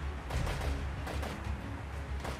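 Rifle shots from Kalashnikov-pattern assault rifles, several sharp reports in quick, uneven succession, over background music with a steady low bass.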